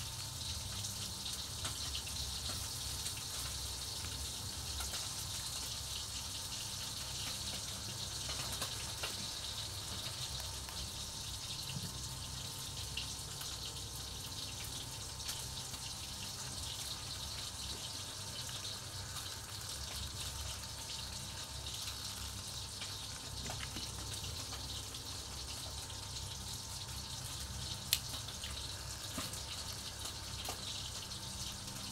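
A steady hiss with a low hum underneath, and one sharp click about two seconds before the end.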